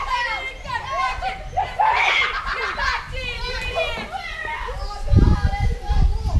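Boys' voices calling and shouting in the middle of a backyard cricket game, high-pitched and excited. About five seconds in, a loud low rumble joins them.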